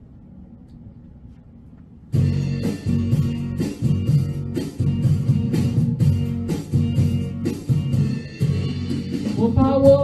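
Karaoke backing track for a Chinese pop song starting abruptly about two seconds in, with a steady beat. A singing voice comes in near the end.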